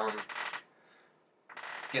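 A man's voice: a drawn-out "um" trailing off about half a second in, a short pause with near silence, then his voice coming back in near the end.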